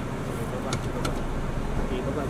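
Car engine idling, heard from inside the cabin of a small Suzuki Dzire sedan as a steady low rumble, with faint voices and a few light clicks.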